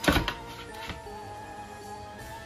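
A spatula scraping against a metal baking sheet as it is pushed under a pizza slice, a short loud scrape right at the start, over background music with held notes.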